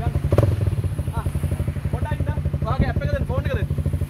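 Honda CRF250L single-cylinder dirt bike engine idling steadily, with even firing pulses.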